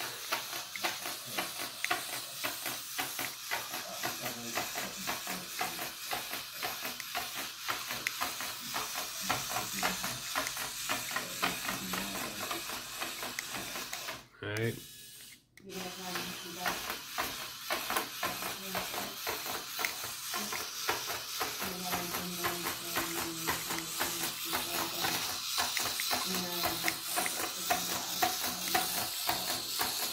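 Hexbug Spider robot toy walking on a wooden tabletop: its small motor whirring and its plastic legs clicking in a fast, continuous rattle. The rattle cuts out for about a second halfway through, then resumes.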